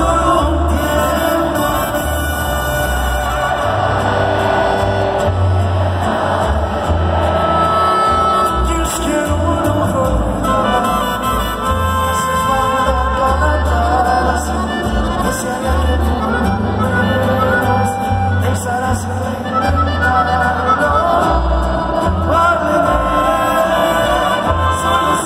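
Live regional Mexican ranchera music: a male singer over accordion and guitars, with a deep bass line stepping from note to note, playing on without a break.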